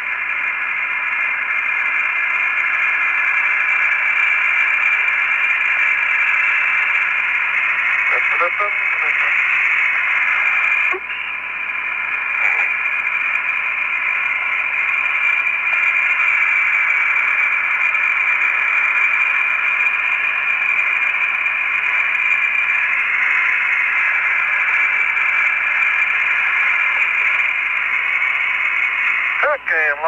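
Steady, loud hiss on the Apollo air-to-ground radio voice link, an open channel carrying no words. There is a brief dip in the noise about eleven seconds in.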